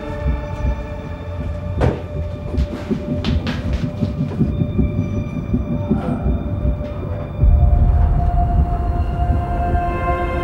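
Cinematic film score: sustained drone-like tones over a deep rumble, with a few sharp hits in the first six seconds. The rumble swells suddenly and gets louder about seven and a half seconds in.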